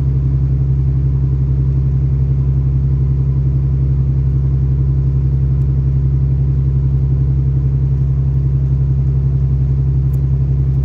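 Irish Rail 29000 class diesel multiple unit heard from inside the passenger saloon while under way: a steady low drone from the underfloor diesel engine and running gear, with a strong deep hum and no change in pitch or level.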